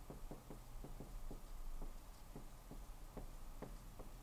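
Dry-erase marker writing a word on a whiteboard: a faint, irregular series of short squeaks and taps as the letters are stroked out.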